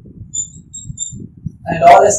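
A short pause in a man's lecture, filled by faint low room noise and a few faint, brief high chirps; his speaking voice comes back near the end.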